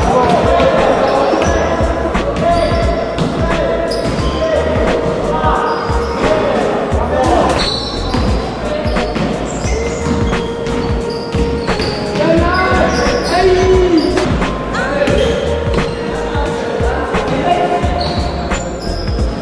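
A basketball bouncing and being dribbled on a wooden gym floor during play, with a run of short knocks, players' voices and the echo of a large hall.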